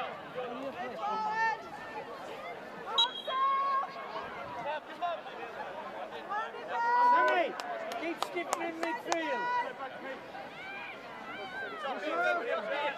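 Open-air chatter and calls from spectators and players, with louder shouted calls about three seconds and seven seconds in.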